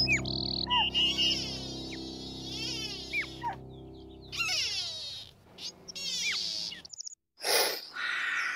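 High, quick chirping calls, repeated many times over a held low music tone that fades out by about halfway. After a brief drop to silence near the end, there is a short breathy burst of noise.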